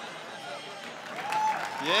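Stand-up comedy audience applauding after a punchline, with a voice rising out of it near the end.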